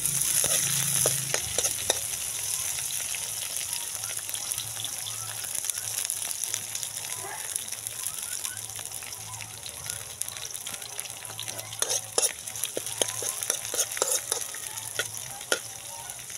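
Garlic, onion and just-added chopped green onions sizzling in hot oil in a metal wok. The sizzle is loudest at the start and eases slowly, and a metal spoon stirring the pan scrapes and taps against it now and then, more often near the end.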